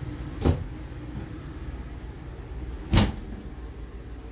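Two sharp knocks about two and a half seconds apart, the second a little louder: wooden RV cabinet doors being shut, over a steady low background hum.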